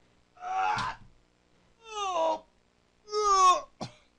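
A man's strained groans of effort as he lifts a very heavy Tyrannosaurus rex skull piece: three cries, each falling in pitch, then a brief knock near the end.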